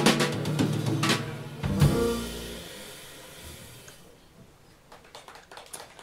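A jazz quartet of electric piano, double bass and drum kit closing a song: sustained final chord with drum and cymbal hits, a last accented low hit about two seconds in, then the sound rings out and fades. A few faint sharp clicks near the end.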